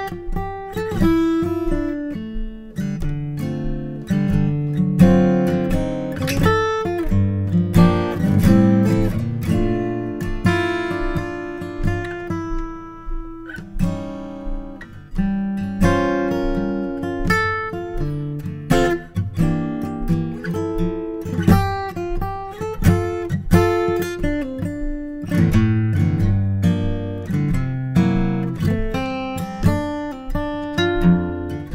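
Martin steel-string acoustic guitar playing a slow chord melody built on A7 altered chords resolving to D minor, with plucked chords and single notes ringing out and a short lull near the middle.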